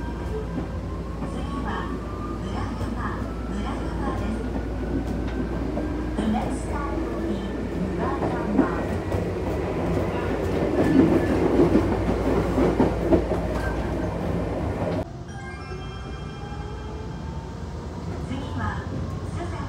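Electric commuter train heard from inside the carriage as it gathers speed: a steady low rumble with a motor whine rising slowly in pitch, and wheel and rail clatter growing louder toward the middle. About fifteen seconds in the sound drops abruptly to a quieter running noise.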